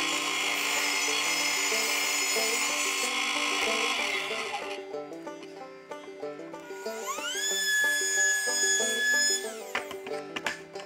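A table saw running and cutting through a pine board until about five seconds in, then a trim router spinning up with a rising whine, running steadily for a couple of seconds and winding down near the end. Background music plays underneath.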